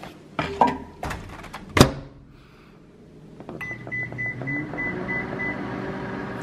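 Microwave oven being set and started: a few handling clicks and one sharp clack about two seconds in, then a quick run of short high keypad beeps, and the oven starts running with a steady hum.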